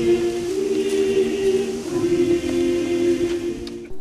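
A choir singing slow, long-held chords that change a few times, breaking off just before the end.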